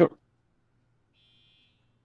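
A one-word spoken reply, then near silence with a faint high electronic buzz that comes in for under a second near the end, over a faint low hum.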